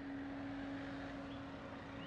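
A white Toyota Etios sedan rolling slowly along a street, its engine giving a soft steady hum over low tyre and road noise.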